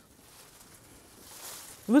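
Faint rustling of tomato leaves and stems as a spent tomato plant is pulled out of its row. The rustling grows a little louder after the first second.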